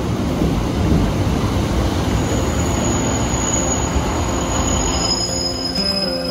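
Northern Class 156 diesel multiple unit at a platform: a steady rumble of the train running, with a thin, high-pitched squeal that comes in about two seconds in and again near the end.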